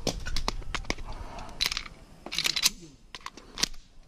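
Handling noise of a pistol reload on the move: a scatter of sharp clicks and short scuffs as an empty magazine comes out and a fresh one goes into a Grand Power X-Caliber, with footsteps on grass. No shots are fired.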